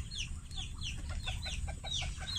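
A flock of chickens clucking, with chicks peeping in a steady run of short, high, falling chirps, about three or four a second.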